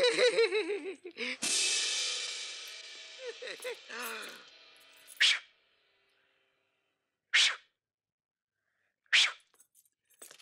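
A croaking chant trailing off, then a sudden hissing shimmer, the film's magic effect for vanishing under an invisibility cap, fading away over about three seconds with a few vocal sounds under it. Then come three short hissing puffs about two seconds apart.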